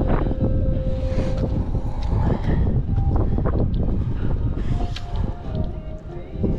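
Wind buffeting the microphone: a loud, uneven low rumble that sets in suddenly just before and carries on throughout.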